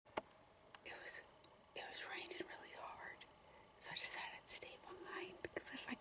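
A woman whispering, with a short sharp click right at the start.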